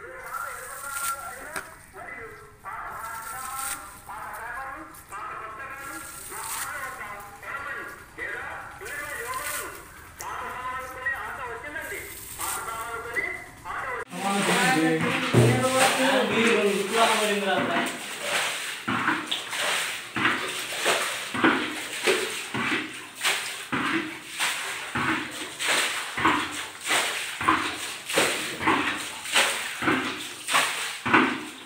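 People's voices talking through the first half. After a sudden change about halfway, a voice goes on, and a regular stroke comes about every 0.7 s, each a short scrape or knock.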